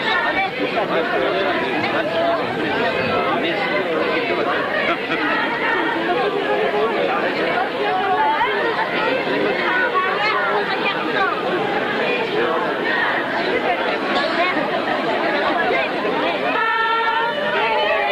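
Crowd chatter, many voices talking at once in a dense, steady babble. Near the end a steady pitched sound comes in over it.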